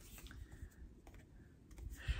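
Near silence with a few faint, scattered clicks and light handling noise of paper greeting cards being sorted.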